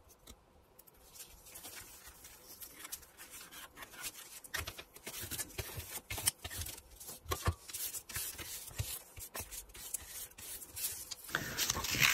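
Glued tea-bag paper being smoothed down over a painted card with a flat tool, giving irregular rubbing and scraping strokes on paper that grow louder as it goes.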